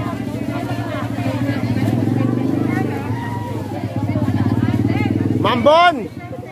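A motorcycle engine running steadily at a low, even pitch beneath street voices. A louder voice cuts in near the end.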